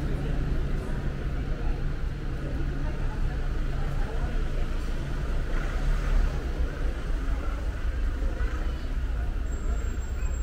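Town-street traffic: motor vehicles running with a steady low rumble, and a low engine hum in the first few seconds, under the voices of people nearby.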